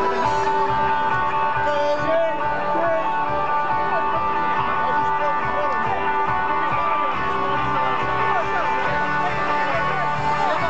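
A live band plays loud amplified music with electric guitars through a large PA, heard from within the audience in front of the stage.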